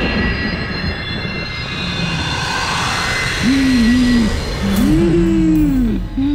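Eerie horror sound design: a dense rushing swell laced with high ringing tones that slide downward and fade. About halfway through it gives way to a louder series of wavering wails that rise and fall in pitch.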